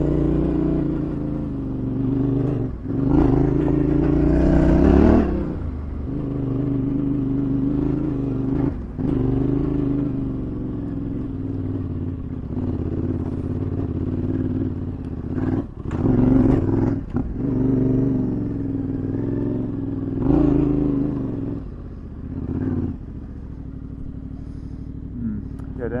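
Yamaha Tenere 700's parallel-twin engine running under a rider on a dirt track, the revs rising and falling as the throttle opens and closes, with a few short knocks along the way.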